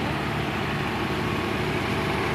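Farm tractor engines running steadily as a line of tractors drives slowly past.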